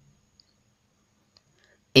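Near silence with two faint clicks. Chanted Quran recitation starts again at the very end.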